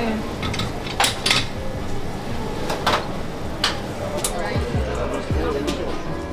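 Cups and dishes clinking in a busy coffee shop: several sharp clinks and knocks over background music and chatter.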